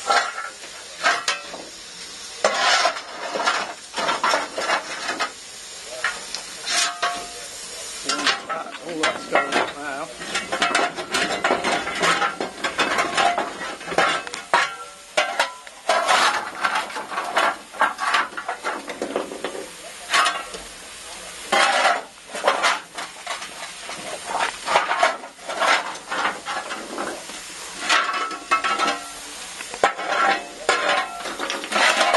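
Irregular metal scraping and clanking on a steam locomotive footplate, typical of a fireman's shovel working coal into the open firebox, over a steady hiss.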